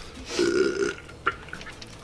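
A man belching once, a low rough burp of about half a second, from a stomach full of curry and rice. A short click follows a little later.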